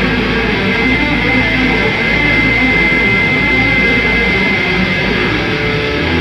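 Metal band playing live: distorted electric guitars and bass, loud and dense. A thin, high, steady tone rings above the mix for a few seconds in the middle.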